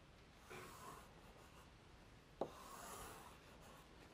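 Chalk drawing on a blackboard, faint: two soft scratchy strokes, about half a second in and around three seconds in, with a sharp tap of the chalk meeting the board just before the second stroke.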